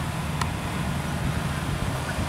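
Kubota DC-70 combine harvester's diesel engine running steadily as the machine drives out to the field: a low, even hum.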